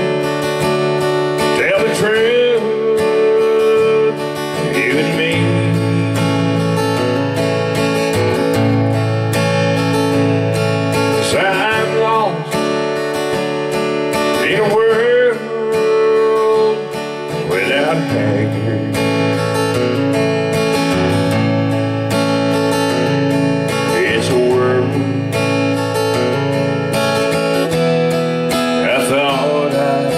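Acoustic guitar strummed steadily, with a man's singing voice sliding between long held notes over it.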